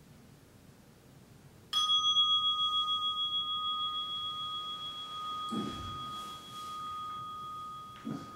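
A meditation bell struck once, ringing on with a wavering pulse as it slowly fades, marking the end of the sitting. A low rustle of clothing comes near the end.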